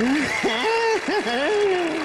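A man's voice giving a high, drawn-out, wavering 'ai' answer in put-on falsetto. Its pitch slides up and down and breaks off twice before dying away near the end. It is an exaggerated, simpering reply that his partner then says is creepy rather than gentle.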